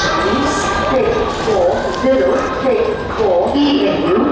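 A voice speaking over a railway station's public-address system, making an announcement.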